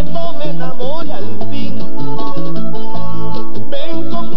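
Vallenato band playing: a diatonic button accordion leads the melody over a bass guitar that steps through short repeated notes and conga drums.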